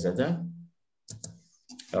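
A few quick clicks at a computer about a second in, as a link is copied and pasted into a chat, between stretches of a man's speech.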